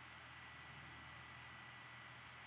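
Near silence: faint recording hiss with a thin, steady high whine and a low hum.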